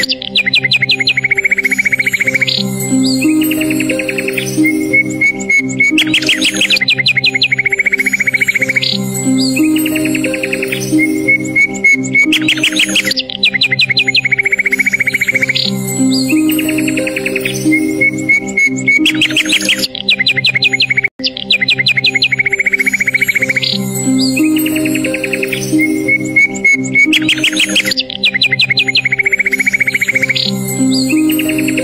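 Relaxing instrumental background music with birdsong chirps mixed in. The same bird phrase recurs about every six and a half seconds, as a loop. The sound cuts out for an instant about two-thirds of the way through.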